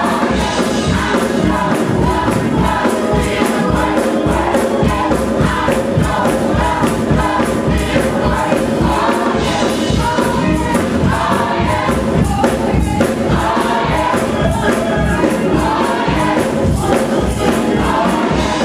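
Church choir singing a gospel song with instrumental backing and a steady beat.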